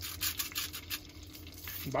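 Hand salt grinder twisted over a pot, a rapid run of short dry grinding clicks through the first second, with a few more near the end.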